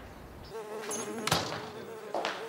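A wavering, insect-like buzz starts about half a second in and carries on, with one sharp knock just past halfway.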